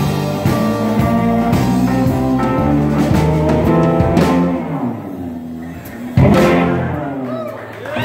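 Live rock band playing: electric guitars, bass guitar, drum kit and keyboard. About four and a half seconds in the bass drops out and the playing thins, then a sudden loud chord hit about six seconds in rings out and fades.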